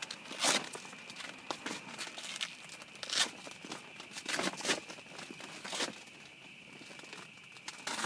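Clear plastic rain-cover sheet crinkling as it is pulled about, with Velcro fastenings ripping apart in a few short, irregular tears as the skirt is stripped off the cargo bike's frame.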